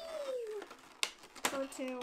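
A girl's voice: a drawn-out vocal sound falling in pitch, then a few spoken words near the end, with one sharp click about halfway through as the plastic packaging is handled.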